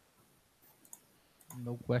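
A few faint, separate computer mouse clicks, three or four over about a second, then a man starts speaking near the end.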